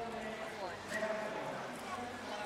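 Overlapping chatter of spectators' voices in a crowd.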